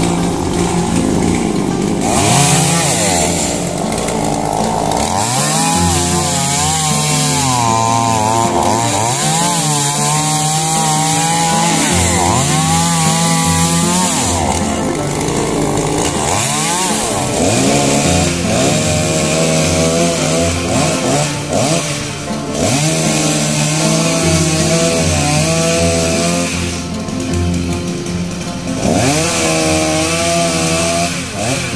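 Two-stroke chainsaw revving up and down again and again as it cuts through coconut palm trunks, with background music underneath.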